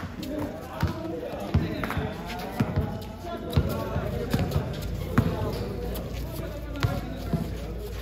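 A basketball bouncing on a concrete court, with sharp thuds at irregular intervals of roughly a second.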